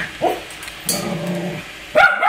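A small dog vocalizing at a Roomba robot vacuum: a short yip about a quarter second in, then a longer, lower whining bark about a second in.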